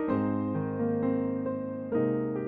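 Slow, gentle instrumental piano music: chords struck every half second to a second, each ringing on and fading before the next.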